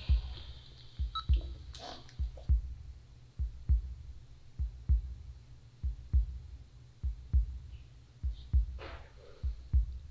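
Slow, even heartbeat thumping, low and soft double beats about one pair every 1.2 seconds, with faint brief rustles near 2 and 9 seconds.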